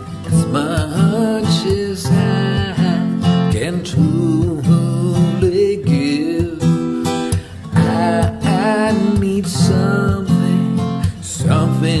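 Song with acoustic guitar strumming and a melody line over it.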